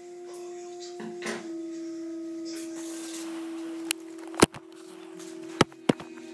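A steady humming tone holds through the background, with three or four sharp knocks or clicks in the second half, the loudest about four and a half seconds in.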